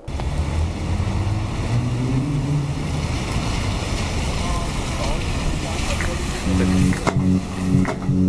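Traffic on a rain-wet street: a double-decker bus passing close, with engine rumble and the hiss of tyres on the wet road. Music with a steady low bass line comes in about six and a half seconds in.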